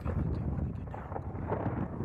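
Strong wind gusting against the microphone in a building thunderstorm, a heavy, uneven rush weighted low.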